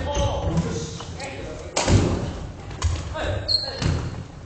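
Badminton rally: sharp racket strikes on the shuttlecock about once a second, with thudding footsteps and brief shoe squeaks on a wooden gym floor, echoing in a large hall.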